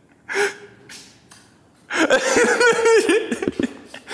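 A woman's sharp gasp, then from about two seconds in breathless, wavering laughter in a high voice.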